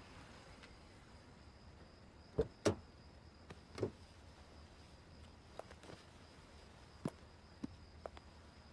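A car's rear door and interior being handled: a few soft knocks and clicks over a quiet background, the last clicks as the door latch is opened near the end. A faint steady high whine runs underneath.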